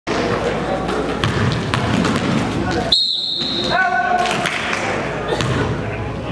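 Basketball gym sounds in a large echoing hall: balls bouncing, knocks and voices. About halfway through, the background drops out for a high steady whistle tone lasting under a second, followed by a short lower tone, before the gym noise returns.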